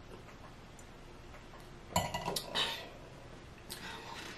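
A wine glass set down on a countertop amid light clatter of cutlery and a food container: a short cluster of clinks about halfway through, after a quiet stretch.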